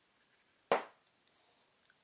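A single sharp click less than a second in, dying away quickly, followed by a faint, brief hiss.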